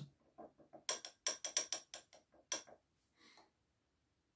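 A metal spoon clinking against a ceramic coffee cup, about a dozen quick light clinks over two and a half seconds, as the crust of grounds on a cupping brew is broken.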